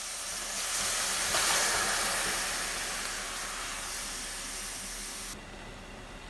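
Seasoned pork meat hitting a hot frying pan with minced garlic and sizzling loudly. The sizzle swells over the first second or so, slowly eases, and near the end drops suddenly to a quieter bubbling sizzle of meat cooking in its juices.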